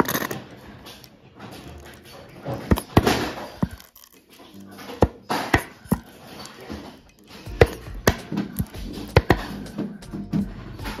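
Plastic squeeze bottle of red sauce being squeezed onto a bowl of noodles, giving a series of sharp pops and short noisy spurts, over background music.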